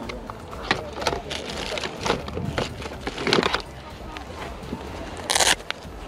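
Small plastic electronics (remote controls, old phones, sat navs) being rummaged through in a plastic crate, with scattered clicks and clatters as the gadgets knock together. A short, loud burst of noise comes about five and a half seconds in.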